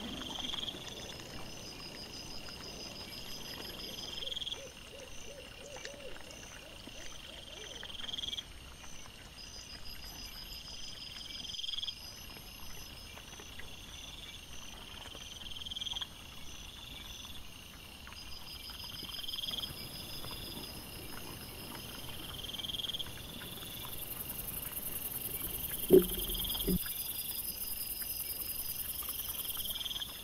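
Night insects chirping in a regular pattern, one call about every two seconds with faster trilling above, over faint background hiss. Near the end a single short, loud, low sound stands out, lasting under a second.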